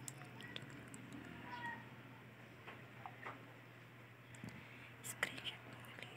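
Faint clicks and taps of fingers handling a smartphone and pressing its side buttons, with a sharper click about five seconds in, over low whispering.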